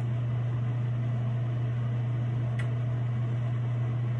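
Steady low hum with an even background hiss, and one faint tick about two and a half seconds in.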